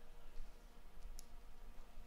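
Faint, low rumble of open-air field ambience with a single short, sharp click just over a second in.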